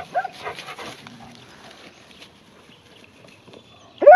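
A dog whining and yipping in short, faint pitched calls during the first second or so, then only faint background noise.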